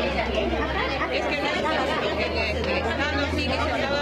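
Many people talking at once, an overlapping babble of voices in a hospital emergency area, recorded on a mobile phone. A low steady hum runs beneath it and cuts off shortly before the end.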